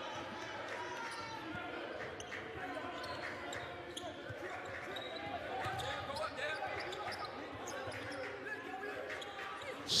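Basketball being dribbled on a hardwood court, with players and coaches calling out on the floor of a large gym.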